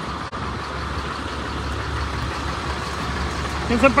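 Flatbed tow truck's engine idling steadily.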